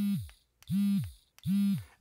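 Mini Educator e-collar receiver's vibration motor buzzing in vibration mode: three pulses of about half a second each, each dropping in pitch as it stops.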